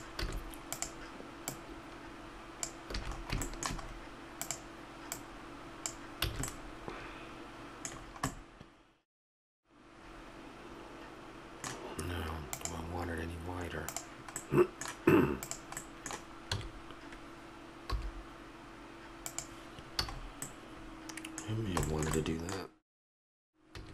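Computer keyboard keys clicking at an irregular pace as editing shortcuts are pressed, over a faint steady hum. The sound cuts out completely for about a second around nine seconds in.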